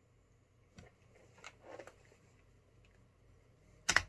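Quiet room with a faint click about a second in and soft rustling, as headphones are lifted from the neck onto the ears. The rap track starts again right at the end.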